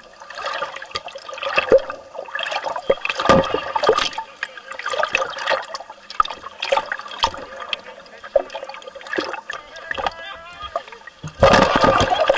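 Underwater sound of water churning and bubbling as large fish feed around bait, with many sharp splashes and knocks, and a loud rush of bubbles near the end.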